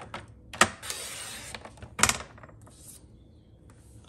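Sliding-blade paper trimmer cutting a strip of card: a sharp click as the blade carriage is pressed down, about a second of scraping as it slides along the track through the card, then another sharp click about two seconds in.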